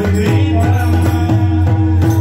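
Marathi devotional kirtan music: pakhawaj barrel drums played in a steady rhythm over a sustained low drone, with chanting.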